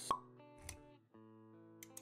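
A single sharp pop sound effect just after the start, the loudest thing here, over intro jingle music of held chords; a softer short hit follows a little later, and the music drops out briefly around halfway before its chords come back.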